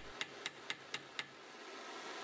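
Faint, light metallic clicks, about five in quick succession within the first second or so, from steel pliers and a small heated wire chainmail ring touching a steel rod anvil.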